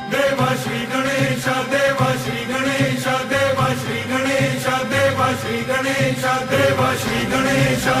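A devotional chant sung to music with a steady percussion beat.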